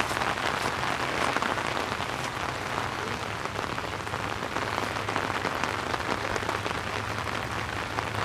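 Steady rain falling: an even hiss dotted with many small drop ticks.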